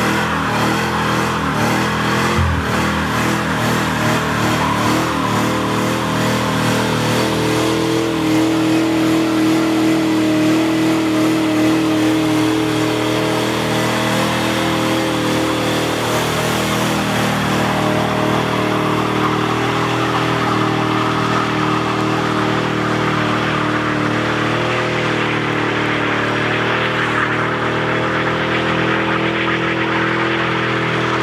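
Fox-body Ford Mustang doing a long burnout: the engine is held at high revs while the rear tire spins and smokes against the road. The engine's pitch wavers for the first several seconds, then holds steady.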